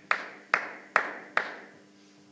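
A table tennis ball bounced over and over at a steady pace, about two and a half bounces a second, each a sharp click with a short ring in the hall. The bouncing stops a little before the end.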